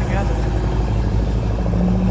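Steady low rumble of a car engine running, with voices in the background.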